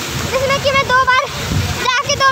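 Pool water splashing steadily, under high-pitched voices calling out.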